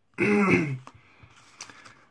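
A man clearing his throat with a single short cough, lasting about half a second, followed by a few faint clicks.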